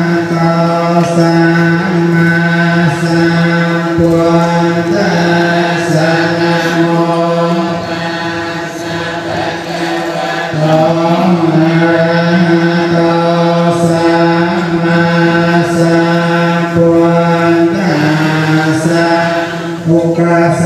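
Buddhist devotional chanting by a group of voices in unison, Pali verses recited on one steady pitch in long drawn-out notes, with a softer stretch near the middle.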